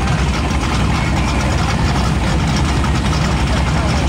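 A white Pontiac Firebird's engine idling with a low, pulsing rumble as the car creeps past at walking pace.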